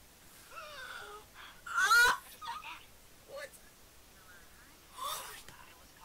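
Short wordless vocal outbursts from people reacting, the loudest about two seconds in and another around five seconds in.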